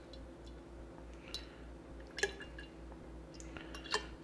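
Melted duck fat pouring in a thin stream from a metal pot into a glass mason jar, faint, with a few sharp ticks.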